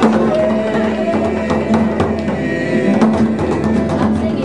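A group of people singing a song together to acoustic guitar, with sharp percussive taps running through it.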